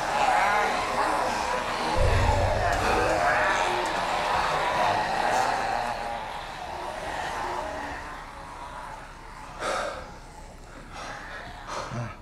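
Muffled, wordless zombie groans, with a low thud about two seconds in; the sound dies down over the second half, with a short burst of noise near the end.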